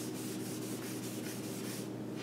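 Chalkboard eraser rubbing back and forth across a chalkboard, wiping off chalk writing in a steady run of short strokes.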